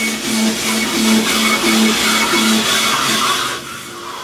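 Rottler CNC cylinder hone rough-honing an engine block's cylinder bore, the stones grinding under a stream of honing oil, with a hum that pulses about three times a second. The sound drops away shortly before the end.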